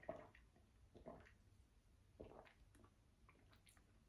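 Near silence broken by three faint, short swallowing sounds about a second apart, as a man drinks soda from a glass.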